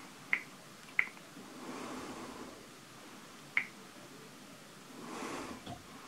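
Three short, sharp clicks from a finger tapping a smartphone's touchscreen: two within the first second, a third a little after three and a half seconds, over faint room hiss.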